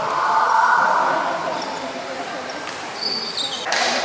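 A rushing whoosh swells and fades over the first second and a half, then a table tennis ball clicks on the table and bat, with the sharpest click near the end.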